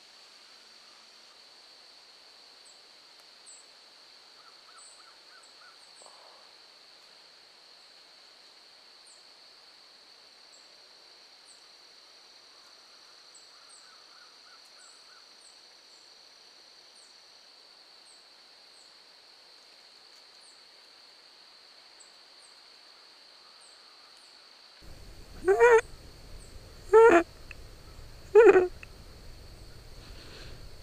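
Quiet woodland background with a steady high-pitched insect drone and faint scattered chirps, broken near the end by three loud calls from a bird, each about a second and a half apart.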